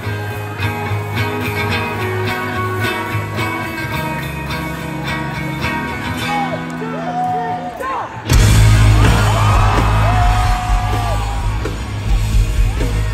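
Rock band playing live through a concert PA: electric guitars, bass and drums, with a voice singing over them. About eight seconds in the full band comes in much louder and heavier.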